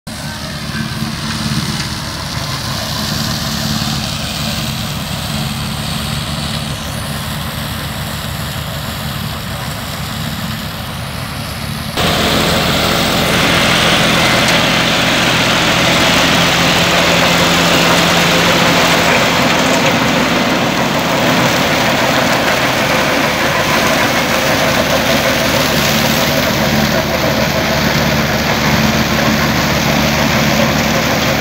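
John Deere 5310 tractor's diesel engine running steadily with a Happy Seeder mounted behind it. About twelve seconds in the sound jumps abruptly louder and noisier, with a strong hiss and rattle over the engine.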